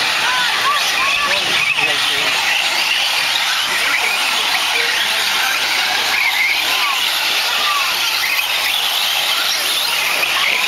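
A pack of radio-controlled 4WD short course trucks racing on a dirt track: a steady hiss of tyres on loose dirt, with many short rising and falling motor whines as the trucks speed up and slow down through the corners.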